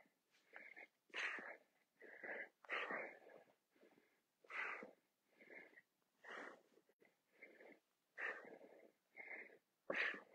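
Faint, heavy breathing of a man working through a set of dumbbell curls, short hard breaths in and out at about one a second.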